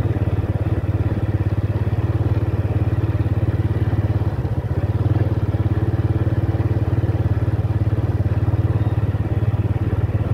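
Small motorcycle engine running at a steady speed while riding along a dirt track, a fast, even pulsing drone.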